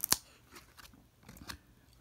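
1994 Topps baseball cards stuck together by their glossy UV coating being pried apart by hand: a couple of sharp snaps right at the start as the coating cracks, then faint crackling and rustling, with another small snap near the end.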